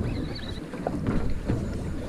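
Wind buffeting the microphone over water lapping and sloshing against a boat's hull, a steady noise with no distinct events.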